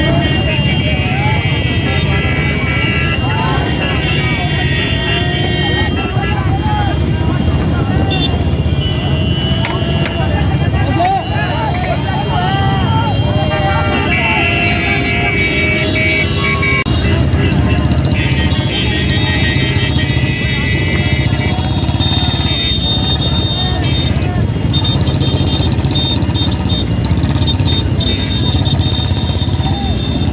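Motor vehicle engines running steadily under men's shouting, with horns tooting at times through the second half.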